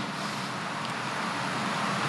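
Steady, even background noise with no distinct events.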